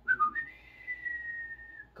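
A high whistle: a short dipping note, then one long, nearly steady note that sags slightly in pitch and stops just before the end.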